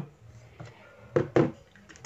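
Bottles and cosmetic containers being picked up and set down among others on a wooden tray, giving two short knocks a little past the middle.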